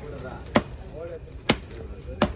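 Long knife chopping tuna into chunks on a wooden block: two sharp chops about a second apart.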